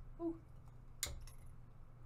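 A single sharp click about a second in as a phone logic board is handled on a microsoldering preheater, over a low steady hum.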